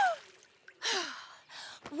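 Cartoon character's voice: an amazed "wow" trailing off in falling pitch, then a breathy gasp-like sigh about a second in.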